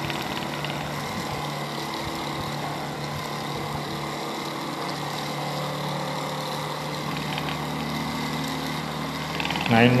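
Homemade single-phase BLDC motor with a toroidal magnet rotor, running steadily and giving a steady hum with a higher whine. Its pitch shifts slightly partway through as the supply voltage is turned up.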